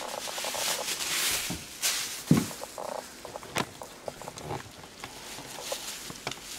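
Strips of plastic grocery bags rustling and crinkling as they are handled and braided by hand, with a few sharp clicks along the way.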